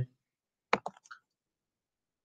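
Two quick sharp clicks close together, then a fainter third, with near silence around them.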